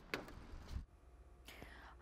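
Quiet studio room tone with soft breath noise from a news reporter between sentences, a longer breath at the start and a fainter one about one and a half seconds in.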